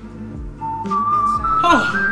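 A few steady whistled notes, each held briefly and stepping up in pitch, over background music. A man's voice cuts in near the end.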